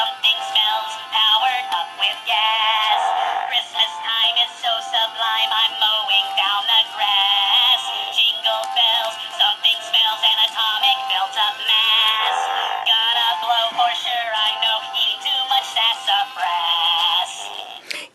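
Animated Christmas goat plush toy playing its song: a high-pitched synthetic singing voice with music, thin and tinny from the toy's small speaker.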